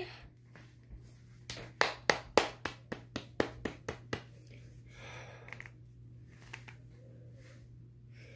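A quick run of about a dozen sharp plastic clicks, roughly four a second, from a twist-up concealer pen being worked to push out product that will not come out; the pen seems to be used up.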